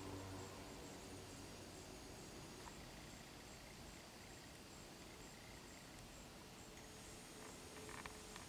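Near silence: faint outdoor ambience with a faint, high insect chirp repeating about three times a second.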